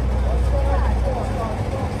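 Low steady rumble like an idling vehicle engine, which drops away a little over a second in, under faint background voices.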